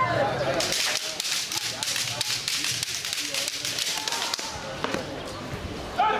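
Many bamboo kendo shinai clacking and striking in quick, overlapping hits for about four seconds, then thinning out. A shout trails off just at the start.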